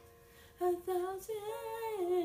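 A teenage girl's voice singing unaccompanied. After a brief pause, a sustained, gliding sung line begins about half a second in.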